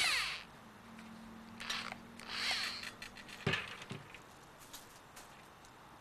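A hand-held variable-speed drill spinning a length of copper wire clamped at its far end, twisting it to straighten it. The motor winds down with falling pitch just after the start, runs again briefly about two seconds in, and is followed by a sharp click and a few light handling knocks.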